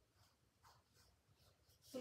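Near silence with a few faint, soft strokes of paintbrushes on canvas as acrylic paint is applied.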